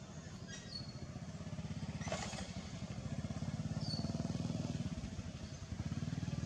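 A small engine running nearby with a rapid low putter, growing louder to about four seconds in and then easing. A few short high chirps sound over it.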